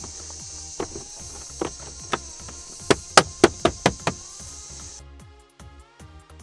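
Plastic interior trim panel of a Jeep Wrangler JK being pressed back into its retaining clips: a string of sharp clicks and snaps, coming fastest about three to four seconds in, over background music. About five seconds in the work sound cuts out, leaving only the music.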